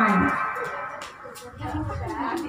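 A man's drawn-out call falls in pitch and ends in the first moment, followed by a quieter stretch of low voices from a group of people, with faint clicks.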